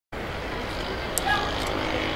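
Steady background noise of a gathering picked up through the microphone, with faint voices briefly heard and a single sharp click about a second in.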